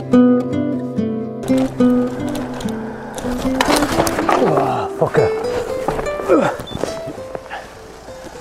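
Background music of plucked guitar notes. About a second and a half in, the live sound of a bicycle crash on the road cuts in: a rushing, scraping noise and a man's short cries that fall in pitch.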